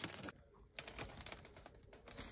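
Faint crinkling and light clicking of a foil-and-plastic wrapped bacon package being handled, louder in the first moment, then a string of small irregular clicks.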